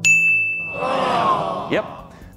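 A single bright bell ding sound effect, struck sharply and ringing about half a second, marking the reveal of a verdict after a timpani drum build-up; a fainter, noisier sound effect follows for about a second.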